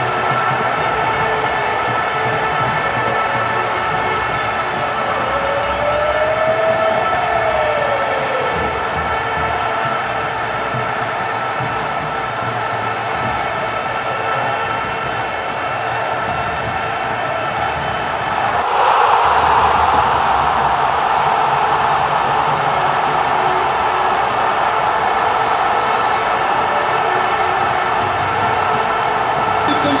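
A loud, steady drone of several held tones, with a short rising-then-falling glide about six seconds in. It turns louder and noisier at about nineteen seconds.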